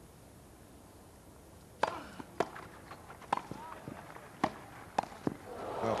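Tennis ball struck back and forth in a rally: a hushed crowd, then a run of sharp racket hits starting about two seconds in, coming faster near the end, and applause beginning to rise as the point is won.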